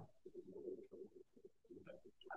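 Near silence, with only a faint, low, wavering sound in the background.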